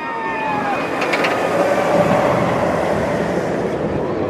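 Steel B&M hyper coaster train running along its track with a steady rushing noise, with a falling shout from riders in the first second.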